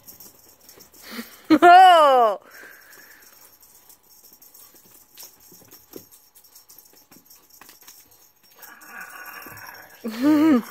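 A domestic cat meows once, a single call that rises and then falls in pitch, about a second and a half in.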